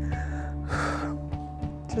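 A crying woman's gasping breath about a second in and a sniff near the end, over soft background music with sustained notes.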